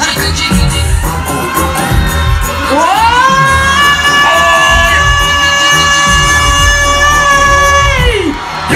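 Live dancehall music over a PA with a heavy bass beat and crowd noise. About three seconds in, a long high note rises and is held steady for about five seconds, then drops away at the end.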